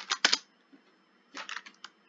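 Computer keyboard keystrokes: a quick cluster of clicks at the start and another about a second and a half in.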